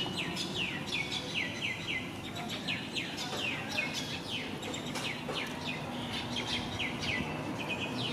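Birds chirping: a quick, unbroken run of short chirps that slide down in pitch, several a second, with more than one bird calling over another.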